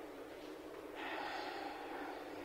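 Faint steady hiss of an old hearing recording, with a short, slightly louder hiss about a second in.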